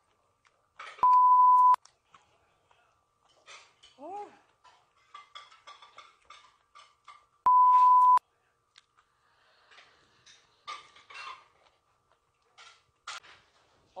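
Censor bleep: a loud, steady one-tone beep lasting under a second, heard twice, about a second in and again about seven and a half seconds in, laid over swearing. Between the bleeps, faint clicks of chopsticks on dishes.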